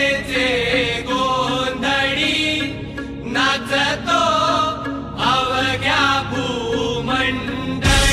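Music track of a voice chanting a devotional song over a steady drone.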